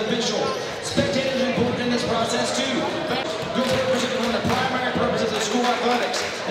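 Basketballs bouncing on a hardwood gym floor in repeated thuds, under a steady hubbub of people talking in a large echoing gym.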